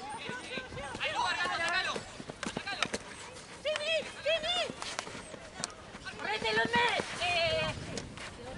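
Women field hockey players shouting high-pitched calls across the pitch, with several sharp clacks of hockey sticks hitting the ball.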